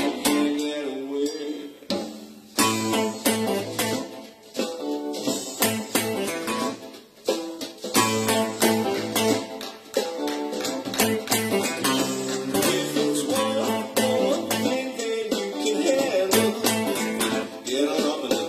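Funk-soul band music with a guitar part played along to it, with a steady beat and regular sharp hits throughout.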